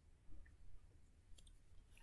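Near silence: room tone with a low hum and a few faint clicks about one and a half seconds in.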